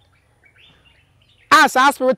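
Faint bird chirps over a quiet outdoor background, then a man's voice starts speaking near the end.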